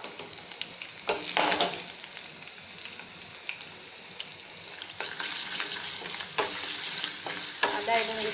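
Ginger and garlic paste sizzling in hot white (vegetable) oil, stirred with a wooden spatula that scrapes across the pan. A louder scrape comes just over a second in, and the frying grows louder with small crackles from about five seconds in.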